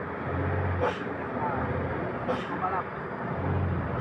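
Engines of a truck and a small pickup coming up the road, a steady low drone over tyre noise that grows a little louder near the end.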